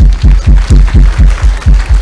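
A handheld microphone thumped repeatedly against the chest: a quick run of about nine heavy, low thumps, some four or five a second.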